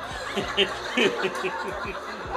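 A man chuckling: a quick string of short laughs, each falling in pitch.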